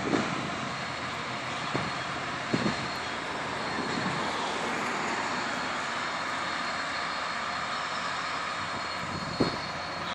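LORAM rail grinder grinding the rail in the distance: a steady, even rushing roar with a faint high whine, broken by a few brief low thumps.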